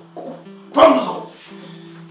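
Background film score holding a low steady drone, with one short, loud, bark-like call with falling pitch just under a second in.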